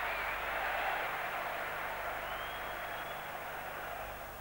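Football stadium crowd noise, a steady wash of many fans' voices that slowly fades after a near miss on goal.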